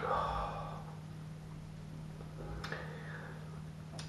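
A man breathing out after a sip of stout, the breath fading away over about a second, then a short breath about two and a half seconds in; a steady low hum runs underneath.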